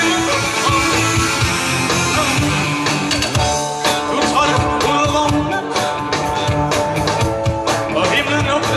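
A live rock band playing an 80s-style glam rock song, with electric guitar and sustained notes. A steady drum beat comes in more strongly about three and a half seconds in.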